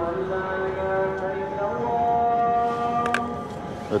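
A muezzin's call to prayer sung from a mosque minaret: one man's voice holding long, drawn-out notes, stepping up in pitch about halfway through.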